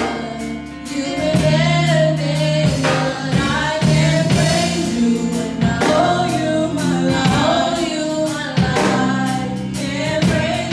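Three women's voices singing a gospel praise song together over an instrumental backing with steady low notes and a regular beat.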